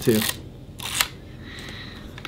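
A single sharp mechanical click, about a second in, from a Fuji 6x9 medium-format camera being handled.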